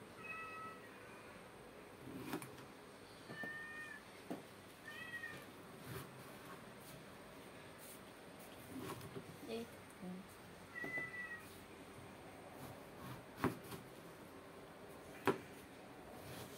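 A kitchen knife knocking on a plastic cutting board as Chinese eggplant is cut into chunks, with the two sharpest knocks near the end. Four short, high mewing calls come through at intervals of a few seconds.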